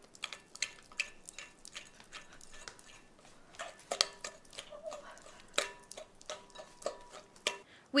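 A utensil stirring round in a glass mixing bowl, giving a string of irregular light clinks and scrapes against the glass.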